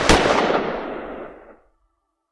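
A handgun shot just at the start, its echo fading away over about a second and a half.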